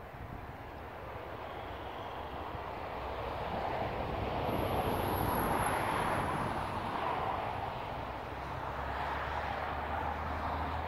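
A vehicle passing at a distance: a steady rushing noise that swells to its loudest about halfway through and then eases off, with a faint high whine at the peak.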